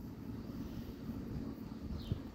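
Faint, steady low rumble of distant engine noise.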